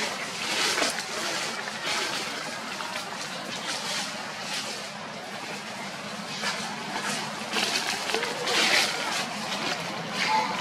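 Dry leaves rustling and crackling in short bursts every second or two as a monkey moves about and handles the leaf litter, over a steady outdoor background.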